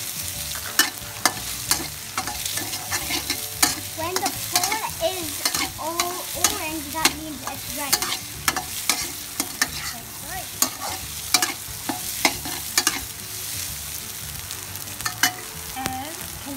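Metal spatula stirring and scraping egg, garlic and prawns in a steel wok, with frequent sharp clicks of the spatula striking the pan over a steady sizzle of the food frying in oil.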